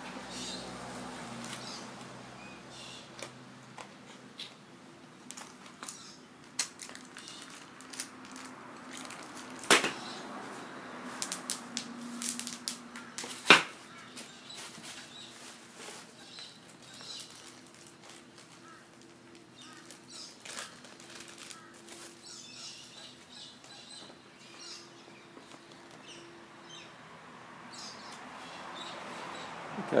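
Rustling and crinkling of paper sheets, bubble wrap and cardboard as a boxed doorway pull-up bar is unpacked and handled, with scattered light clicks and two sharper knocks in the first half. A faint steady hum runs underneath.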